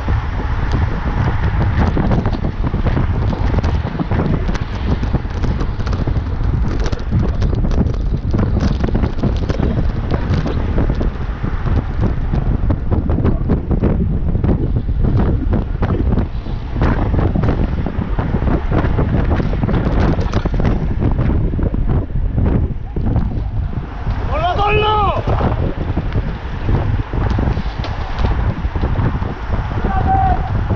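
Wind buffeting the microphone of a bicycle-mounted action camera riding at speed in a bunch of road cyclists, a loud steady low rumble. A short voice call rises and falls near the end.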